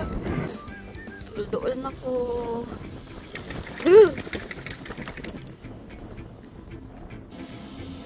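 A person's voice making drawn-out wordless sounds over background music, with one loud call that rises and falls in pitch about four seconds in.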